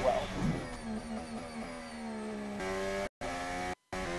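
McLaren Formula One car's Mercedes turbocharged V6 engine heard on-board, running with a steady note that steps to a new pitch about two and a half seconds in. The sound cuts out twice for a moment near the end.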